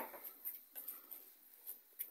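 Quiet background with a few faint, brief clicks.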